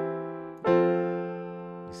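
Keyboard piano playing two chords: the first is already ringing and fading, and a second is struck about two-thirds of a second in and left to ring out. This is the C-over-E passing chord resolving back to an F chord.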